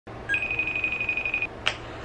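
Smartphone on speakerphone sounding a high electronic tone with a fast flutter for a little over a second as a call connects, followed by a short blip near the end.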